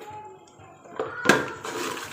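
A spoon knocks once against a steel cooking pot about a second in as salt is added, followed by a hiss of frying and stirring in the pot.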